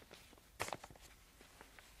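Near silence: quiet studio room tone with a few faint, short clicks, the clearest about half a second in.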